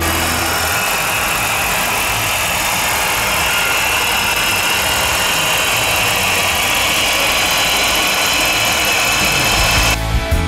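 A 5.7-litre HEMI V8 idling steadily, heard close up from the open engine bay.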